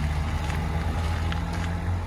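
Steady low hum of an idling engine.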